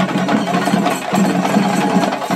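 A troupe of chenda drums beaten with sticks in a fast, continuous roll of rapid strokes.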